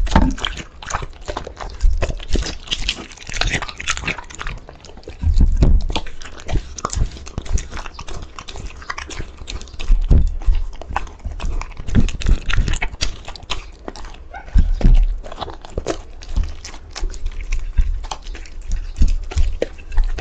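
Border collie eating raw meat from a plate: an irregular run of chewing clicks and mouth smacks, with louder bites every few seconds.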